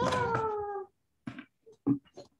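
A domestic cat meowing once, a drawn-out call of just under a second that falls slightly in pitch, followed by a few short, faint sounds.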